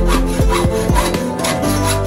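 Hand hacksaw being worked in quick back-and-forth strokes, about three to four a second, over background music.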